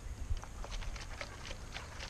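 Irregular light clicks and ticks, several a second, from a plastic syrup bottle and a plastic honeycomb frame being handled as sugar syrup is poured over the frame, over a steady low rumble.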